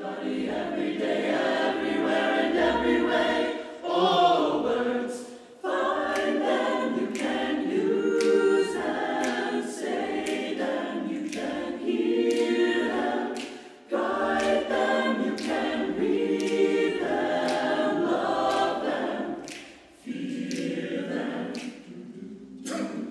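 Mixed-voice chamber choir singing a cappella, men's and women's voices in harmony, in phrases broken by three short pauses, with crisp consonants.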